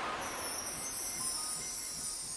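Intro sting for an animated logo: a high, shimmering, chime-like sound effect that slowly fades.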